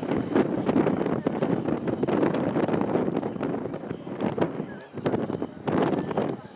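Distant aerial fireworks going off in a rapid barrage, a dense run of pops and booms that eases off about three-quarters through, then two more quick clusters near the end.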